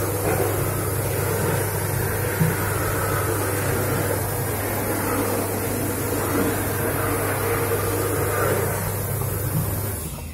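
A steady low electric hum with an even rushing hiss over it, unchanging throughout: the background noise of a washroom's machinery.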